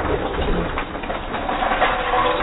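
Metal ice scoop digging into a bin of ice cubes, the cubes clattering against each other and the scoop in a dense, continuous rattle.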